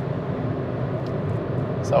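Steady road noise inside the cabin of a Volkswagen e-up! electric car cruising on a motorway. A man's voice starts right at the end.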